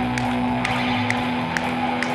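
Live indie rock band playing an instrumental passage, electric guitars and bass with held notes over a steady beat of about two hits a second.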